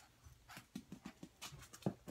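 Small dog playing right at the microphone: a faint run of irregular light clicks, taps and snuffles, the sharpest click near the end.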